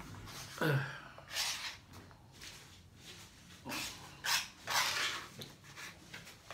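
A man's short falling whimper under a second in, then several short, noisy breaths through the mouth and nose: the sounds of someone struggling with the burning heat of very spicy Samyang noodles.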